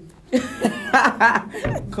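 A person laughing in a few short, breathy bursts, with speech starting again near the end.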